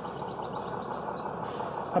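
A vehicle engine idling, heard as an even, steady noise with no separate events.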